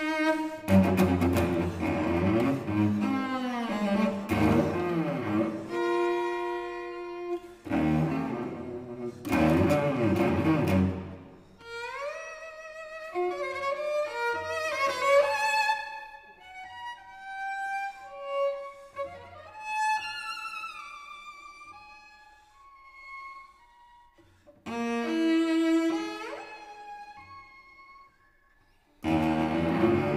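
Solo cello playing a fragmented, wildly leaping line with exaggerated vibrato. The first ten seconds are loud and low, then quieter high sliding notes take over from about twelve seconds, and loud low playing returns near the end after a brief pause.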